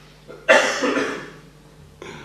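A person coughing: a sudden loud cough about half a second in, with a second cough straight after it.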